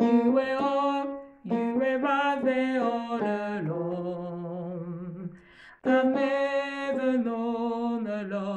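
A woman singing a gospel worship melody in a low register, the melody taken an octave lower, in three phrases with short breaths between. The middle phrase ends on a long held low note.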